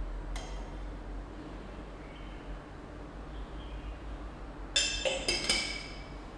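Glass teapot parts clinking: a light tap about half a second in, then a quick cluster of ringing glass clinks near the end as the lid with its glass infuser is set into the pot.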